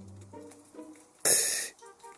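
Soft held musical notes that step in pitch, then, about a second in, a short loud breathy hiss like a sharp exhale.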